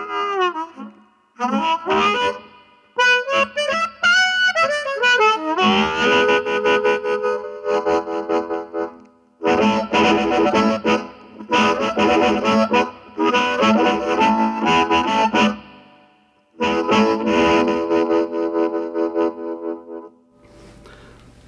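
Harmonix2 wireless electric harmonica, amplified and played in phrases of chords and bent, sliding notes with short pauses between them. It is held cupped tightly in both hands, which makes the tone dirtier and overdriven, the 'Chicago sound'.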